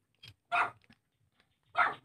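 A dog barking: two short barks, about half a second in and again near the end.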